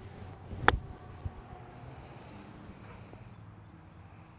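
A wedge striking a golf ball once from a fairway lie: a single sharp click about two-thirds of a second in, then faint open-air quiet.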